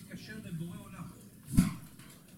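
Faint talk in the room, then one short, loud cough about a second and a half in.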